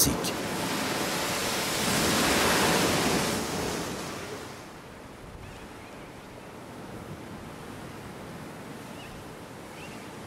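Atlantic surf breaking on a rocky shore: a wash of noise that swells about two to three seconds in, then eases to a quieter steady hiss.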